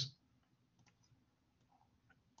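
Near silence with a few faint, short clicks of a computer mouse being clicked.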